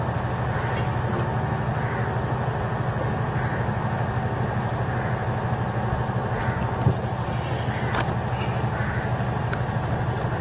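Steady background din under a low, constant hum, with a couple of faint clicks near the end.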